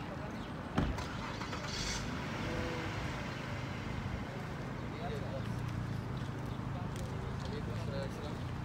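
Outdoor ambience dominated by a motor vehicle's engine, its low hum growing louder in the second half, with faint voices in the background. A short knock about a second in.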